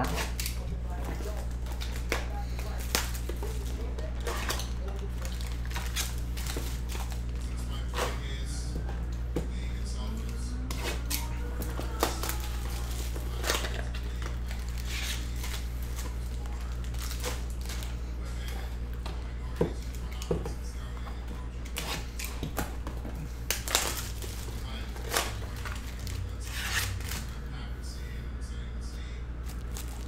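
Trading-card packaging being opened and handled: a cardboard cereal box and the cellophane wrapper around a stack of football cards, giving scattered crinkles, tears and clicks over a steady low hum.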